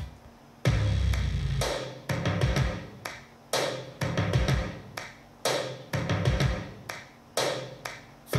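Music played back through a wooden speaker cabinet fitted with a Noema 300GDN39-4 woofer: a slow beat of heavy drum hits, about one a second, each dying away before the next.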